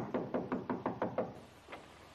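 A fist knocking on a door: a rapid run of about eight knocks in just over a second, then a single knock. He is knocking because the doorbell is out of order.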